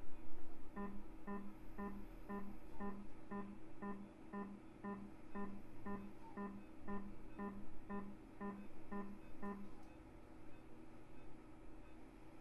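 Electronic beeping from an ultrasonic energy device's generator, a steady train of identical short beeps about twice a second that runs for about nine seconds and then stops, over a faint steady hum. This is the activation tone of Harmonic shears sounding while the jaws seal and cut tissue.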